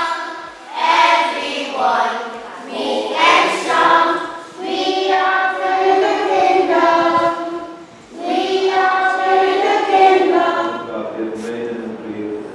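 A group of children singing together without accompaniment, in a few long phrases with short breaks between them.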